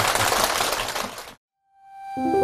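Audience applause, dense clapping that cuts off abruptly about one and a half seconds in. After a moment of silence, music with held notes fades in near the end.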